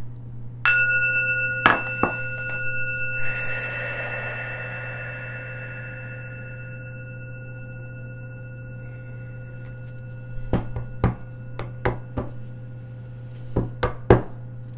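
A brass singing bowl is struck once about a second in and rings with several clear tones. The higher tones die away within a few seconds, while the lower ones hang on and slowly fade. Near the end come a run of sharp clacks from a tarot deck being shuffled.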